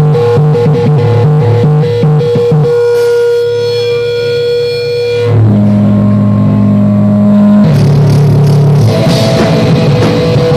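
Live heavy band with distorted electric guitars and drums, played loud. The drums drop out about a third of the way in, leaving held, ringing guitar chords that change twice, and the full band comes back in near the end.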